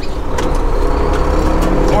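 Semi truck's diesel engine running at low speed, heard from inside the cab while the truck turns slowly, a steady deep rumble with a few faint clicks.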